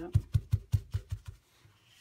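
A folded paper towel patted repeatedly onto wet watercolour paper on a tabletop: about seven quick, dull pats, some five a second, stopping about a second and a half in. The pats blot excess wet colour off the embossed design.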